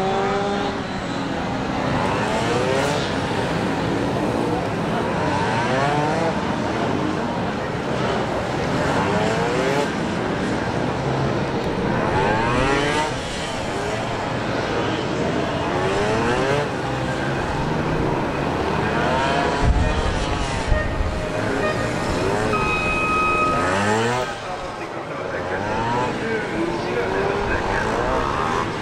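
Honda NSR250R's two-stroke V-twin revving hard and dropping back over and over, its pitch climbing and falling every second or two as the bike accelerates and brakes between cones.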